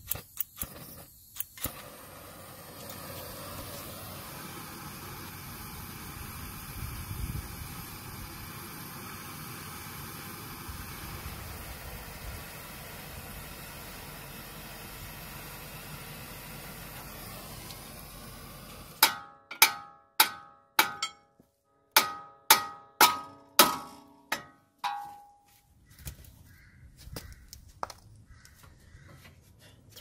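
A gas torch hissing steadily as it heats a steel ball joint taper, then about a dozen sharp hammer blows on the steering knuckle, each ringing metallically, to break the taper free; the last blow rings on briefly.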